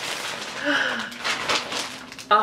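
Plastic mailer bags rustling and crinkling as they are pulled open by hand, in several short bursts, with a brief breathy vocal sound a little over half a second in.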